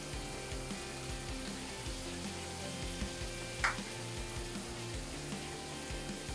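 Shower water running in a steady hiss, with soft background music underneath and one brief sharp sound a little past halfway.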